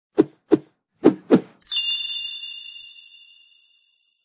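Logo-intro sound effect: four short knocks, then a bright bell-like ding about a second and a half in, which rings on and fades away over about two seconds.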